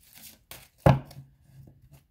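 Tarot cards being handled and laid down on a cloth-covered table: a few short taps, the loudest about a second in.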